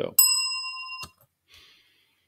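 A single bright bell-like ding that starts sharply, rings for almost a second and is then cut off abruptly.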